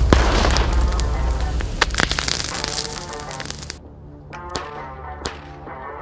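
Leftover sodium metal exploding on contact with water: a series of sharp cracks and pops, with a hissing spray in the first half that cuts off suddenly. Background music plays underneath.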